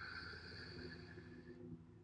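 Near silence: faint room tone with a faint steady hum that fades out shortly before the end.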